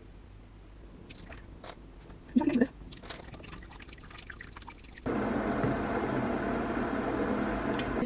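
Faint small drips and soft clicks as coffee-soaked sponge fingers are lifted from a bowl of coffee and laid in a metal baking tin. About five seconds in, a steady hiss starts abruptly and carries on.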